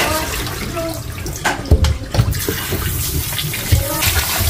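Kitchen tap water running into a steel bowl of small potatoes as they are scrubbed by hand, with a few dull knocks around the middle and one near the end.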